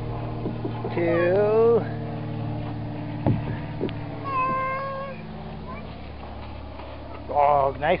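A toddler's high-pitched wordless calls: one rising and falling about a second in, and one held note about four and a half seconds in. Two light knocks come between them.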